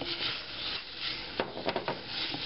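Wooden spoon stirring dry, large-grain couscous through melted butter in a metal pot: a steady gritty scraping rustle of the grains, with a few light clicks in the second half.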